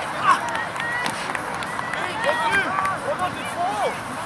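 Several voices shouting and calling to each other during quadball play, short overlapping calls throughout, with one sharp knock about a third of a second in.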